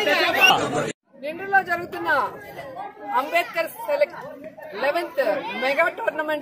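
Mostly speech: several voices talking over one another that cut off abruptly about a second in, then one woman speaking steadily.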